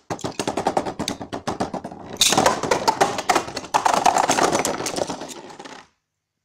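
Beyblade Burst spinning tops clashing and scraping in a plastic stadium: a fast, continuous rattle of hard plastic and metal clicks, with louder clashes about two and four seconds in, stopping abruptly just before the end.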